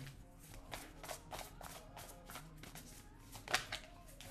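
Tarot deck being shuffled by hand: a quick run of soft card clicks, with one louder snap about three and a half seconds in.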